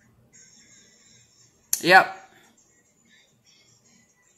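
A single spoken "Yep" about two seconds in, starting with a short sharp click. Otherwise only faint room tone.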